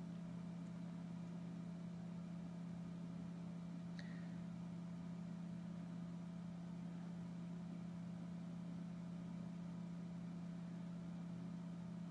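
A steady low background hum, even in level throughout, with one faint click about four seconds in.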